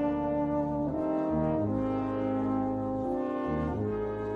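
Slow brass music from the film's closing score: sustained chords in several parts, with the harmony shifting every second or so.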